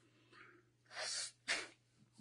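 A man's breath in a pause between phrases: a short hiss of air about a second in, then a brief puff.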